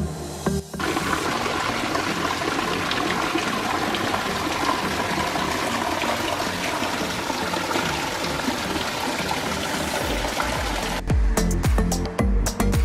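Small waterfall spilling over rocks into a pool: a steady rush of falling and splashing water. Background music cuts out less than a second in and comes back about a second before the end.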